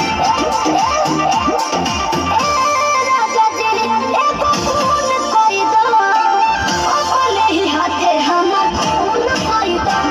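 Loud Indian DJ dance music played through a stage sound system: a melody with bent, sliding notes over a deep, repeated bass beat.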